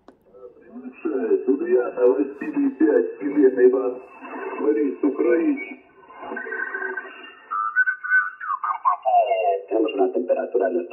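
Yaesu FT-710 HF transceiver's speaker playing single-sideband voice from stations on the 40-metre band, thin and band-limited, with the digital noise reduction turned up high to level 14, a setting that gives a watery effect. About eight seconds in, the received voice slides down in pitch as the tuning knob is turned across the signal.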